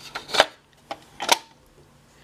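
Plastic clicks of a cassette tape being handled and loaded into a portable boombox's cassette deck: a few light ticks and two sharp clicks about a second apart.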